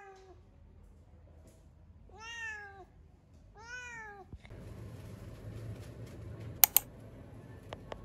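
Domestic cat meowing: a short meow at the start, then two longer meows that rise and fall in pitch, about two and three and a half seconds in. Later a low steady background noise comes in, with a pair of sharp clicks, the loudest sounds, about two-thirds of the way through, and two fainter clicks near the end.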